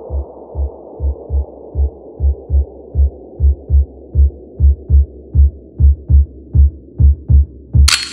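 Brazilian bass / favela riddim electronic track in a breakdown: deep sub-bass kicks in a syncopated pattern, about three a second, under a low pad whose top is slowly filtered down. Short blips join from about three seconds in, and a bright burst hits just before the end as the full beat returns.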